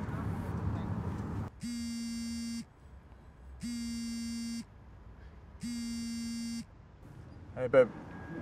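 Mobile phone vibrating for an incoming call: three steady one-second buzzes, two seconds apart. Before them, a car's road and engine noise, and just before the end a brief, loud, voice-like sound.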